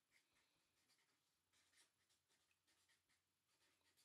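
Near silence, with faint short scratches of a felt-tip marker writing words on a white surface.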